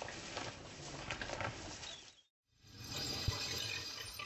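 Faint sounds of African wild dogs tearing at a carcass, then a brief dropout to silence a little after two seconds, followed by faint steady background noise with a single click.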